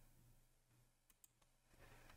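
Near silence with two faint computer mouse clicks a little past a second in.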